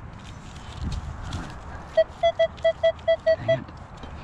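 Handheld metal-detecting pinpointer beeping near the dug hole: about eight short, evenly spaced beeps at one pitch, roughly five a second, lasting about a second and a half. The beeping means the probe is picking up metal near its tip.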